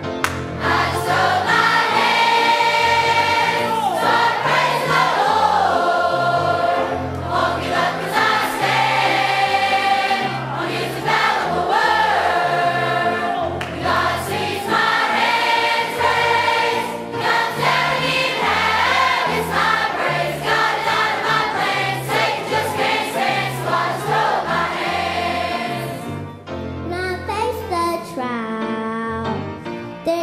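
A large mixed youth choir of children and adults singing a southern gospel song in full chorus. It goes over an accompaniment with a bass line and a steady beat.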